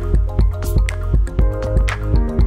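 Background music with a steady beat and a melody of held notes.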